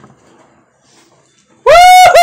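Near silence, then near the end a sudden, loud, high-pitched cry that is held and wavers in pitch.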